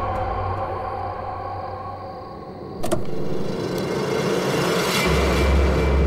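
SUV engine running as the vehicle pulls up, with a sudden louder surge about three seconds in and a deep rumble swelling near the end.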